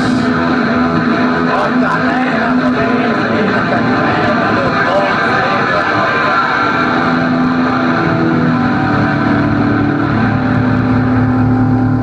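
Live rock band's distorted electric guitars and bass holding a sustained, droning noise, with wavering feedback-like tones and no drum beat. It cuts off abruptly at the end, as the song finishes.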